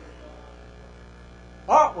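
Steady electrical mains hum in the recording, with a man's voice starting loudly near the end.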